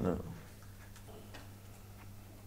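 A man's single short word, then quiet room tone with a steady low hum and two faint ticks a little after a second in.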